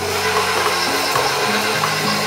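KitchenAid Professional stand mixer motor starting and running steadily on speed two, its flat beater creaming cream cheese and sugar in the steel bowl. Background music plays under it.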